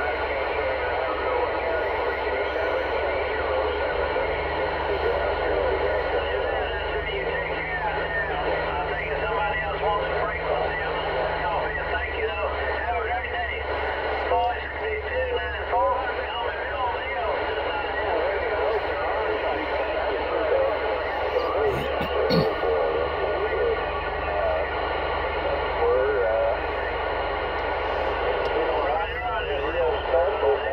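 CB radio receiving skip on single-sideband: the voices of several distant stations come through garbled and overlapping under constant static. A low steady tone comes in for several seconds, twice.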